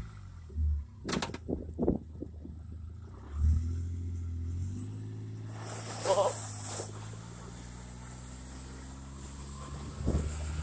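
Kawasaki Mule Pro FXT side-by-side's three-cylinder engine running steadily as it tows a sled over snow. The first few seconds hold knocks and handling thumps, and there is a brief rush of noise about six seconds in.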